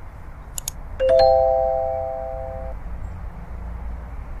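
Two quick clicks, then a bell-like chime about a second in that rings out and fades within two seconds: the click-and-ding sound effect of a subscribe and notification-bell animation, over a steady low background rumble.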